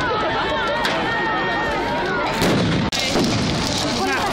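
Crowd voices over a steady din of firework bangs and crackle, with a sudden brief dropout about three seconds in.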